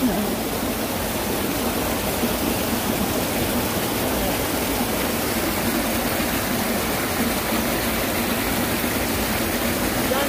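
Mountain stream running over rocks: a steady, even rush of water.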